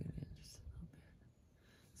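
A quiet pause in a woman's speech: a short breathy sound right at the start, then only a faint low rumble.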